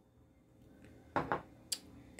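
Mostly quiet room tone, then two soft short sounds a little past the middle and one sharp click near the end.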